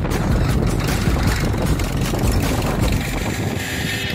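Tractor engine running as it pulls a seed drill through the field, heard as a steady rough rumble with wind buffeting the microphone. Music comes in near the end.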